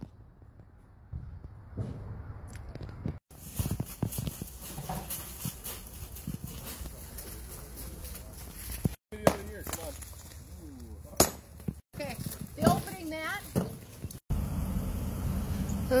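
Indistinct voices of several people talking outdoors, mixed with scattered knocks and clatter, cutting off abruptly several times.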